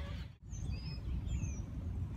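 Outdoor background noise, a steady low rumble, with a few short, high bird chirps. The sound drops out briefly about half a second in.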